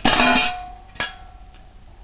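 Metal camp gear being handled: a clank at the start and a sharp tap about a second in, each leaving a thin steady ringing tone that fades away.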